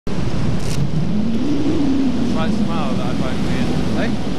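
Rushing wind over the microphone of a hang glider in flight, loud and steady, with voices faintly heard from about halfway through.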